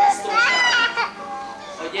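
A toddler crying, with one high wavering wail about half a second in that lasts about half a second.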